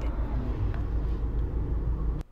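Steady low rumble of background noise, with a fainter hiss above it and no clear events.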